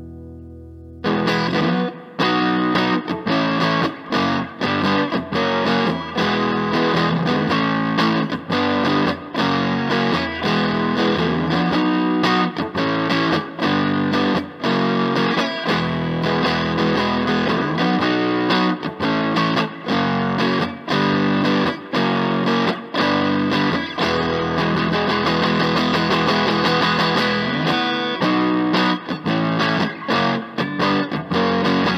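Stratocaster-style electric guitar played through an amplifier. A held chord dies away, then about a second in steady strummed chords begin, with a distorted tone from the guitar's built-in diode-clipping distortion circuit.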